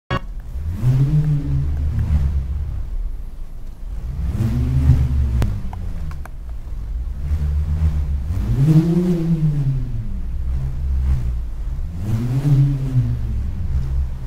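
A low, drawn-out "muuu" call, heard four times, each rising and then falling in pitch, over a steady low rumble.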